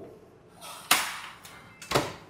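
Electronic keypad door lock responding to a key card: a sharp click about a second in, a brief faint beep, then another click near the end as the lock releases.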